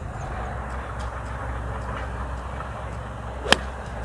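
A 5-iron striking a golf ball: a single sharp crack about three and a half seconds in, over a steady low background rumble.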